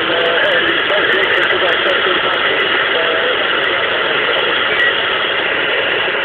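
Long-distance CB radio reception through the speaker of a President Jackson transceiver: a dense, steady static hiss with a distant operator's voice faint underneath.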